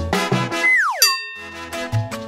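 Upbeat background music breaks off for a comedic sound effect: a whistle sliding quickly down in pitch, then a sudden bell-like ding that rings on briefly before the music picks up again.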